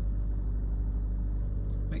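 Car engine running steadily at low revs, heard from inside the cabin, held on a little gas with the manual gearbox in first and the clutch at the biting point.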